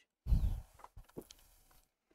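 A short breath or sigh blown into a close commentary microphone, followed by a few faint clicks.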